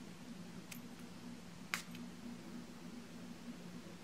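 A perfume spray atomizer spritzing once, a short faint hiss a little under two seconds in, with a fainter brief sound about a second earlier. Low steady room hum underneath.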